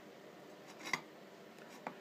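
Quiet handling sounds as stripped copper wire ends are dipped into a tin of soldering flux paste: a faint click about a second in and a fainter tick near the end.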